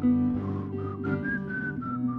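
Live folk music: acoustic and electric guitars playing chords under a whistled melody of a few held notes that slide from one pitch to the next.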